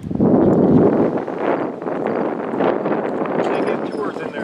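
Strong wind blowing across the camera microphone: a loud, rushing noise that starts suddenly and is loudest in the first second, then carries on a little lower.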